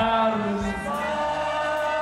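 Live gospel band music through loudspeakers: a long held chord with a voice sustaining a note over it.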